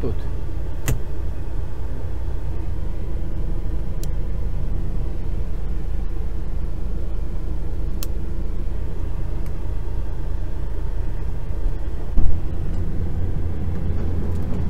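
Truck's diesel engine running steadily at low speed, heard from inside the cab. There are a few sharp clicks, and a louder thump near the end.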